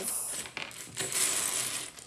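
Small hard plastic pieces of a taken-apart magnetic 4x4 puzzle cube clinking and clattering together as they are handled, in two short runs.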